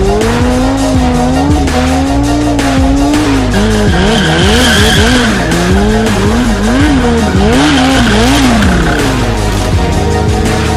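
Stunt motorcycle engine held on the throttle, then revved up and down in quick, repeated swells while the bike circles leaned over, with its rear tyre squealing on the tarmac in two stretches, around the middle and near the end. Background music plays underneath.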